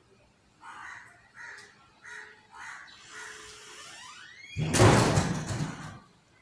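A crow cawing, about five short caws in quick succession. Then a rising whine and a loud rushing noise fill the last second and a half, the loudest sound here.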